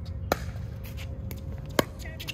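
Pickleball rally: two sharp pops of a plastic ball struck by paddles, about a second and a half apart.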